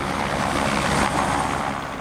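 Tour helicopter flying near a heliport: a steady rotor and engine sound that swells toward the middle and eases off near the end.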